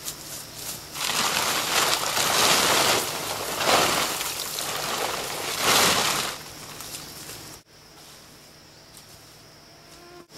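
Heavy canvas tarp rustling and crumpling as it is lifted and dragged, in several noisy surges over the first six seconds. After a sudden cut, only a low, steady background remains.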